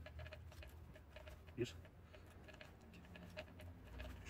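Faint small clicks and rubbing as a stainless Smith & Wesson revolver's open cylinder is handled and wiped clean, with one sharper click about a second and a half in.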